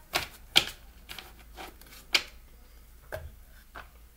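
Paper index cards being handled and tapped on a wooden table: about seven sharp, irregular clicks and taps. The loudest come about half a second in and just after two seconds.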